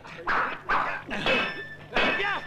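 Dogs barking: three separate barks in under two seconds.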